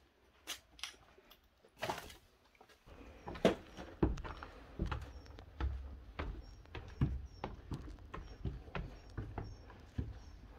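Footsteps climbing a stairwell: irregular knocks and scuffs of shoes on the stair treads, starting about three seconds in and going on at roughly two steps a second.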